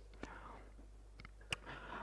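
A pause in a talk: faint room tone with a soft breath near the start and a single short click about a second and a half in.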